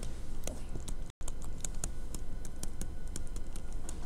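Stylus pen tapping and clicking on a tablet screen while handwriting, with irregular quick taps. The sound cuts out briefly about a second in.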